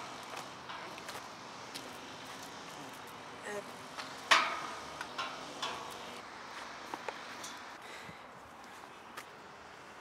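Scooter and riders knocking against a steel picket gate as the scooter is passed over it: one sharp metallic clank about four seconds in, with a few lighter knocks and clicks around it over steady outdoor background noise.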